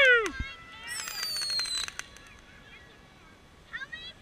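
Ground fountain firework crackling with rapid sharp pops that die away about halfway through. About a second in, a high whistle falls steadily in pitch for about a second.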